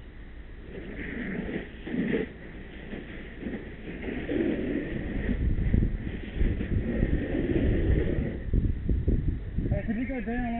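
Indistinct, muffled voices over a low, uneven rumble of wind buffeting the microphone, the rumble strongest in the second half.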